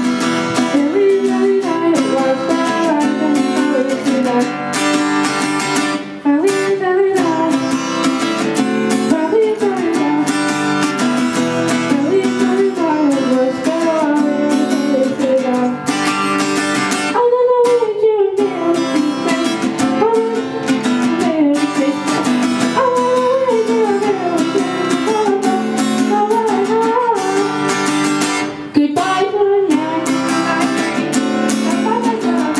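Acoustic guitar strummed as accompaniment to a child singing a song into a microphone, with a woman's voice singing along.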